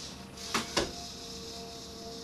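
A homebuilt robot's arm servos whirring with a steady high whine and hiss as the claw releases a ball onto the floor and the arm lifts. Two sharp clicks come about half a second in.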